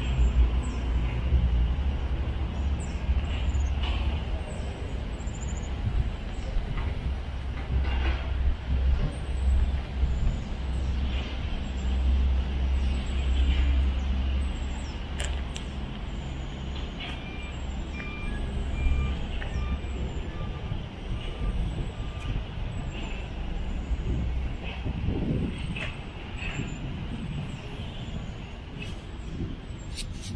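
Car driving slowly on a rough gravel road: a steady low engine and road rumble that eases slightly in the second half. A short run of evenly spaced beeps sounds around the middle.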